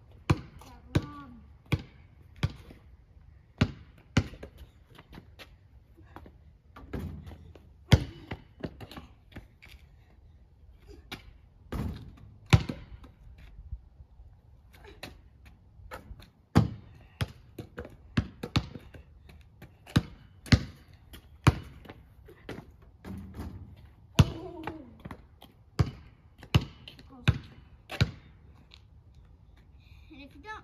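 Basketball bouncing on an asphalt driveway: a long, irregular run of sharp bounces, often half a second to a second apart, with pauses between runs. A shot falls at the rim of a portable hoop about halfway through.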